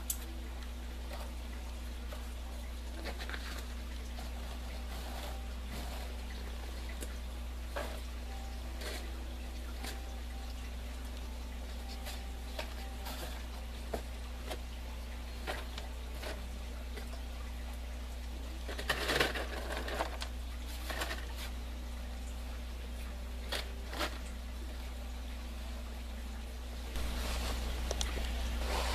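Root barrier cloth rustling as it is handled and tucked down into a plastic barrel, with scattered light clicks and a short burst of rustling about two-thirds of the way through, over a steady low rumble.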